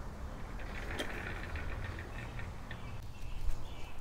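Faint soft rustling with a few light clicks over a low steady outdoor rumble.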